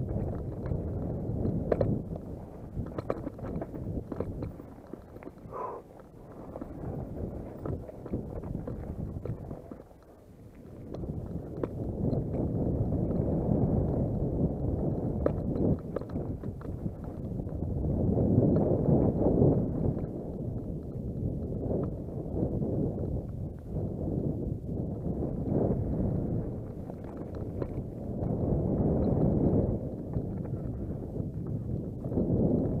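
Downhill mountain bike ridden fast over a dry, rocky dirt trail: tyre rumble and the rattle of the bike, with frequent sharp knocks over rocks, under wind buffeting the camera microphone. The noise swells and drops with speed, falling quietest about ten seconds in.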